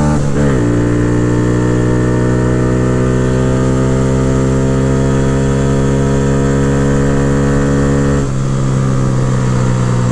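Honda Grom's single-cylinder engine under full throttle. The pitch dips once in the first second, as at a gear change, then holds high and steady until about eight seconds in, when the throttle closes and the note drops. The engine carries a DHM performance cam, Chimera intake and ECU flash.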